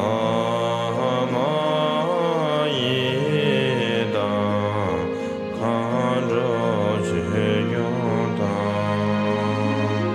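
Music: a mantra sung to a flowing, gliding melody over steady held low notes.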